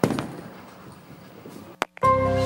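Sound effects of an animated logo intro: a sudden hit that dies away in a noisy tail, then a single sharp click near the end.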